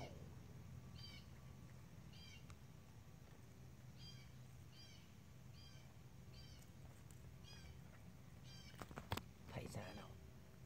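Near silence, with a small bird's short, high chirp repeating faintly about once a second. A few soft clicks come near the end.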